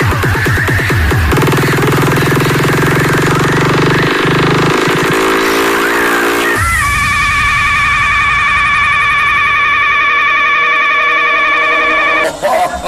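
Frenchcore electronic music in a DJ mix: a fast kick-drum beat stops about a second in, giving way to a sustained low synth with a rising sweep. About halfway through, this changes to high, wavering synth tones with no kick, a breakdown.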